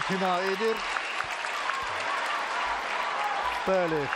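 Arena crowd applauding and cheering, a steady wash of noise, with a held, wavering voice in the first second and again near the end.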